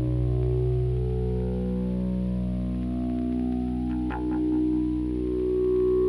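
Synton Fenix 2 analog modular synthesizer sustaining a drone of several steady tones, patched through its phaser in feedback mode and its delay. A short, brighter note sounds about four seconds in.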